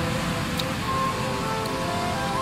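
Steady rush of ocean surf breaking on a beach, with background music playing over it.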